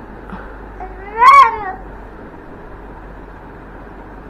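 A toddler's single high, drawn-out whining cry about a second in, rising and then falling in pitch.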